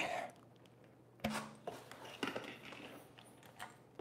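A few faint clicks and light knocks, spaced about a second apart, from handling a fat-tire e-bike front wheel and the hardware at its hub.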